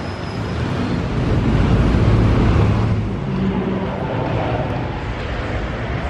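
Street traffic: a motor vehicle's engine grows louder and passes, loudest about two seconds in, over steady city street noise.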